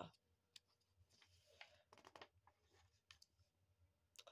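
Near silence, with the faint rustle and light clicks of a hand turning a picture book's paper page.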